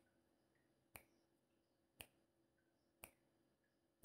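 Countdown-timer ticks: a sharp click about once a second over near silence.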